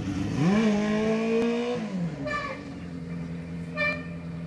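Yamaha 400 cc sport motorcycle accelerating away: the engine revs rise and hold for about a second and a half, then drop about halfway through. A steadier, lower engine note carries on after the drop.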